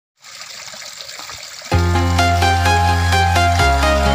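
Water trickling and splashing down a small artificial rock waterfall into its pools. After about a second and a half, loud music comes in with a deep held bass and quick high notes, covering the water.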